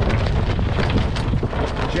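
Wind buffeting the microphone on a sailing yacht under way: a loud, steady rumble with scattered short ticks.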